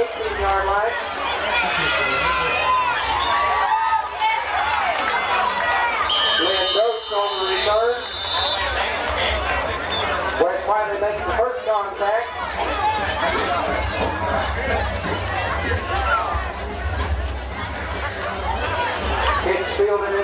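Football spectators' crowd chatter: several people talking and calling out at once, over a steady low rumble. A brief high steady tone sounds about six seconds in.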